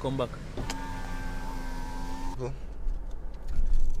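Car's electric power window motor whining steadily for about a second and a half, then stopping.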